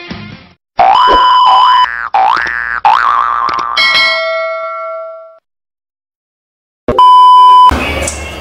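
Edited-in cartoon sound effects over an animated logo. The music cuts off, then come several quick rising 'boing' sweeps and a ringing chime that fades out. After a short silence, a loud, steady beep sounds near the end.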